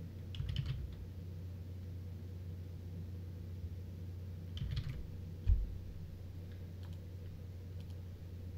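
Computer keyboard keystrokes in two short bursts, about half a second in and again near five seconds, followed by a single low thump, over a steady low hum.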